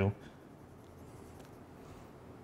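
Faint scratchy rubbing of a wooden eyeshadow stick being handled against the skin of a hand, with a few light scrapes in the middle.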